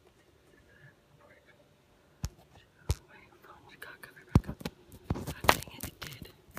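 Handling noise from a handheld camera: sharp clicks about two, three and four and a half seconds in, then a burst of knocks and rubbing near the end as the device is moved.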